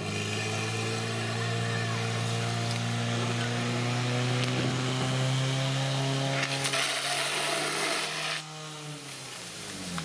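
Portable fire pump's engine running steadily at high revs, driving water through the hoses for the attack. It drops sharply in level about eight and a half seconds in, then winds down near the end.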